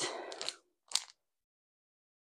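Plastic packaging crinkling as an item is handled and pulled out, followed by one short crackle about a second in.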